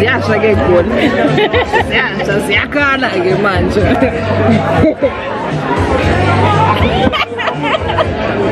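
Several voices chattering and laughing over background music with a steady low bass.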